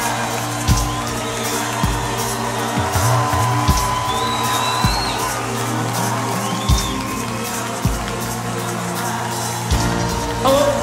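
Live band playing a slow instrumental song intro: a held low synth chord with deep drum hits every second or so. An audience cheers underneath, with a brief whistle or whoop.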